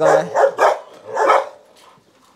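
Belgian Malinois barking twice, two short barks about three quarters of a second apart.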